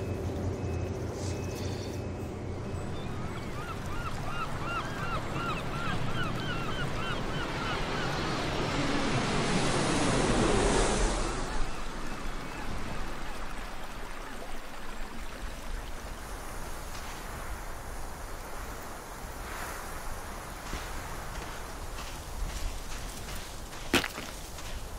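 Steady rushing of wind and water that swells to a peak about ten seconds in, then falls back, with a run of short rising chirps repeated a few times a second between about three and seven seconds in.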